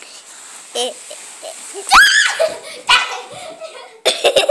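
A girl slides down carpeted stairs in a sleeping bag, letting out a loud rising squeal about halfway through, with a couple of dull thumps on the steps and giggling.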